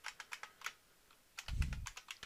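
Computer keyboard keys typed in a quick run of clicks, a short pause, then a few more keystrokes, with a soft low thud about one and a half seconds in.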